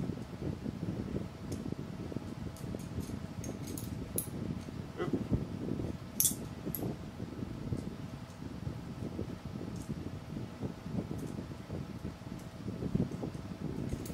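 Small steel fasteners, T-nuts and M5 screws, clicking and clinking against an aluminium rail and plate as they are handled and fitted, a few sharp clicks over a low rustle of handling.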